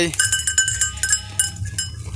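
Small metal bells on a feeding flock of sheep clinking irregularly: many light strikes, each with a short ring, over a low steady rumble.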